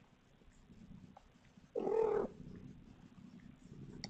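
A cat meows once, a single call about half a second long near the middle.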